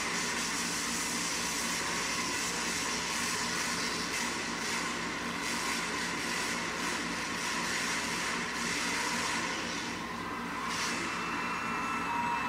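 Monster truck engine running hard during a freestyle run, a steady wash of engine and arena noise with a brief dip about ten seconds in, heard through a television speaker.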